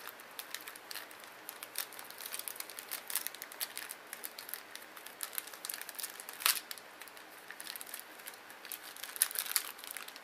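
Clear plastic packaging crinkling and crackling as it is handled and opened, a scatter of irregular sharp crackles, the loudest about six and a half seconds in and again near the end.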